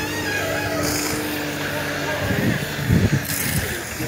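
Komatsu WA200 wheel loader's diesel engine running with a steady hum, then revving unevenly in the second half.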